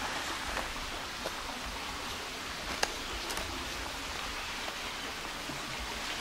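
Steady rush of a small stream spilling over a low concrete dam, with one sharp click just under three seconds in.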